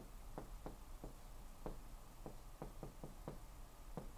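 Dry-erase marker on a whiteboard, writing: a string of about a dozen faint, quick taps and short strokes at an uneven pace as the marker is set down and lifted.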